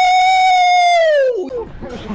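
A man's single long, loud yell, an open "aaah" held on one high pitch, then sliding down and cutting off about one and a half seconds in.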